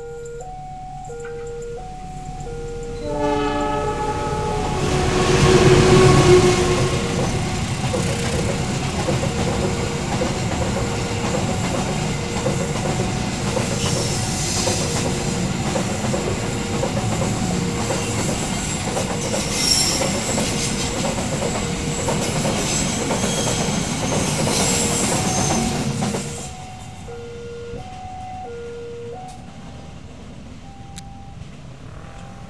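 Level-crossing warning alarm sounding an alternating two-tone chime. About three seconds in, the horn of a CC 206 diesel-electric locomotive sounds, loudest around six seconds, and a freight train of empty cement flat wagons rolls past for about twenty seconds. The train noise cuts off suddenly near the end, leaving the crossing alarm chiming again.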